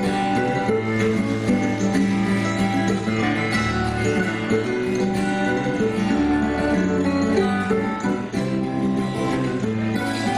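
A mandolin and a steel-string acoustic guitar playing a duet: picked melody notes over low bass notes that change every few seconds.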